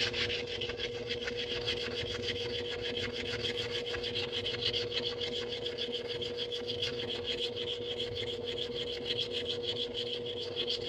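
Hand sanding of a copper coin ring's cut edge on a nail-file sanding block: a quick, even back-and-forth scratching, smoothing the edge.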